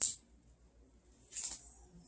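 Chef's knife cutting along the tough centre rib of a Lacinato kale leaf on a cutting board, separating the leaf from the stem: two short, faint scraping and rustling strokes, one at the start and one about a second and a half in.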